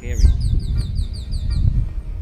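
A small bird singing a quick, high trill of about ten short notes, each sliding down in pitch, lasting about a second and a half.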